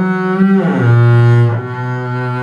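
Double bass played with the bow: a sustained note slides down to a lower note that is held for about a second, then a softer low note follows near the end.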